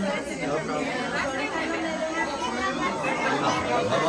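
Several people's voices talking over one another: crowd chatter, with no single voice standing out.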